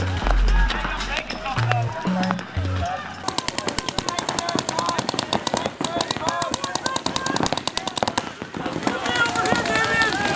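Music with deep bass notes, then from about three seconds in, paintball markers firing rapidly, many shots a second, with players' voices shouting over the shooting.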